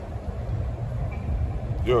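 Low, uneven rumble of wind buffeting the microphone outdoors, filling a pause in a man's talk before his voice returns near the end.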